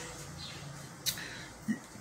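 Faint room tone between spoken phrases, with one short, sharp mouth click about a second in and a brief soft vocal sound shortly before the end.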